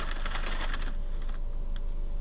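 Stationary car's cabin with the engine idling as a steady low rumble, and a burst of rapid crackling clicks in the first second that dies away into a few scattered ticks.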